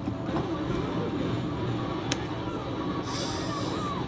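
Arcade ambience around a claw machine: a steady background noise with faint machine music. There is one sharp click about halfway through and a hiss about a second long near the end.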